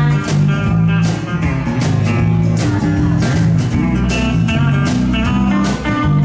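Live band playing, with electric guitar, bass guitar, acoustic guitar and drums keeping a steady beat.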